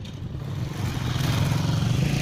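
A motor vehicle's engine approaching, growing steadily louder over the two seconds.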